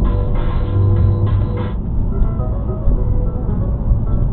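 Music playing on the car radio, heard inside the moving car's cabin over a low road and engine rumble.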